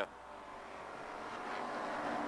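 A field of WISSOTA Street Stock race cars and their V8 engines accelerating away under the green flag. The massed engine noise grows steadily louder.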